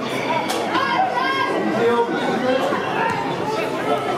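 Several voices overlapping at a football match, players and spectators calling out and chattering with no clear words.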